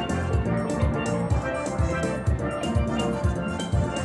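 Steel drum band playing, the ringing steelpans carrying the melody over a steady drum beat.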